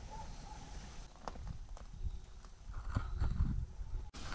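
Faint footsteps and a few scattered light knocks, spaced irregularly.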